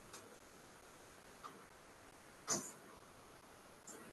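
Quiet room tone over a video-call microphone, broken by a few short, soft noises; the loudest comes about two and a half seconds in.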